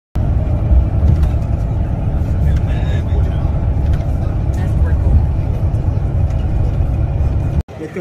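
Steady deep rumble of road and engine noise inside a moving bus cabin. It cuts off abruptly near the end.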